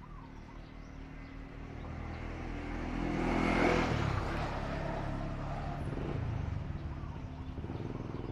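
A motor vehicle passing by: its engine grows louder to a peak about halfway through, then fades away with its pitch dropping.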